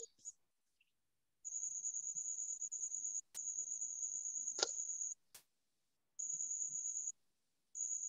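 A cricket trilling in a faint, high-pitched, rapidly pulsing trill that comes in stretches of one to two seconds with short gaps between. A few sharp clicks occur near the middle.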